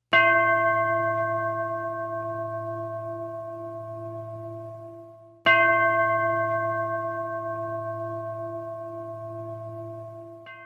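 A deep bell struck twice, about five and a half seconds apart, each stroke ringing long and slowly fading.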